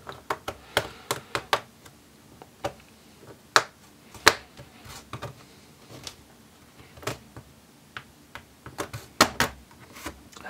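Plastic snap-fit clips between an HP 14-ck0520sa laptop's palm rest and base popping free as a plastic pry tool works along the seam: a string of sharp, irregular clicks, the loudest two a little before the middle and a quick cluster near the end.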